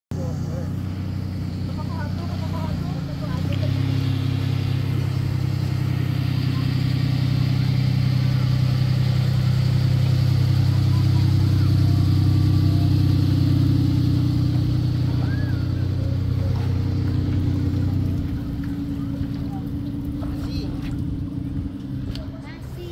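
Ford SUV's engine running steadily as it tows a boat on its trailer up a launch ramp out of the water. It grows louder from about three seconds in as the vehicle passes close, then drops away near the end.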